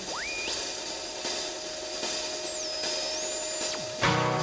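Electronic synthesizer sound effect: a thin whistling tone sweeps up to a very high pitch, steps down and back up, then slides away near the end, over a steady hiss and a held lower tone.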